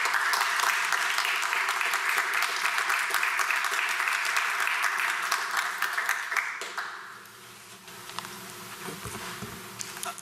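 Applause from a small audience: steady clapping for about six seconds, then thinning out and dying away.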